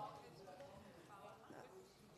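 Near silence: room tone with faint voices speaking away from the microphones.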